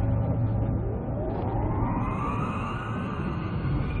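Cinematic sound effects for an animated planetary collision: a deep steady rumble, with a whine that sweeps upward over about two seconds and settles into a high held tone.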